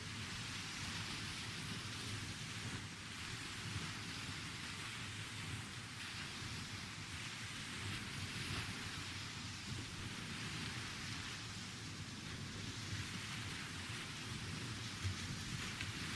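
Steady outdoor background noise: an even hiss with a low, fluctuating rumble and a few faint ticks.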